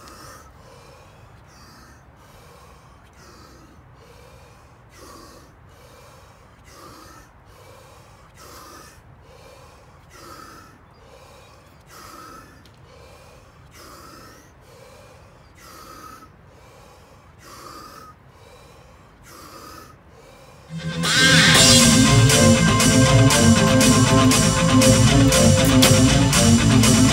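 A man breathing deeply and rapidly in an even rhythm, a full in-and-out breath about every two seconds, in the manner of Wim Hof power breathing. About 21 seconds in, loud guitar music starts.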